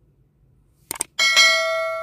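Subscribe-button animation sound effect: two quick mouse clicks about a second in, then a bright bell ding that rings on and slowly fades.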